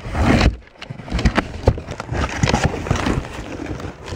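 Cardboard delivery box being handled and pulled open by hand: rustling and scraping cardboard with a quick run of knocks and thumps.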